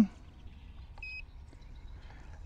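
MSR SE200 Community Chlorine Maker giving a single short high beep about a second in, as its button is pressed to start electrolysis of the salt brine.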